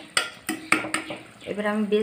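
Metal spoon stirring a fish curry in a cooking pot, knocking and clinking against the pot about four times in the first second.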